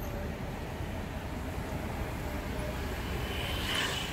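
Steady rumble of city street traffic, with a brief hissing swell near the end.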